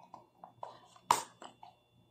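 Faint handling of a cardboard test-kit box in the hands: a few light ticks and one sharper click about a second in.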